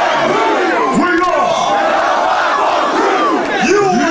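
Packed concert crowd yelling and shouting, many voices overlapping in a large hall.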